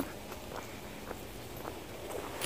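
Faint footsteps on an asphalt path: a few soft steps over a low, steady background noise.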